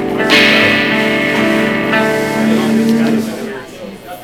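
Amplified electric guitar chord struck once about a third of a second in and left to ring, fading away over about three seconds.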